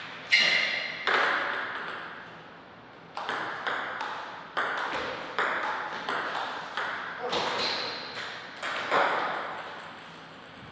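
Table tennis ball clicking off bats and table in a rally, each hit ringing on in a reverberant hall. Two hits, a pause, then a quick run of about a dozen hits that ends near nine seconds in.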